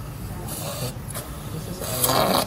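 Surgical suction sucker hissing in short bursts as it draws blood and air from the open aorta, about half a second in and again near the end, over a steady low hum of operating-room equipment.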